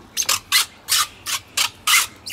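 A plastic-bristled push broom sweeping a tiled floor in short, quick strokes, about three a second.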